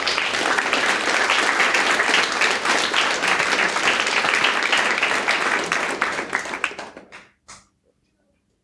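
Audience applause: dense clapping of many hands that dies away about seven seconds in, with one last lone clap just after.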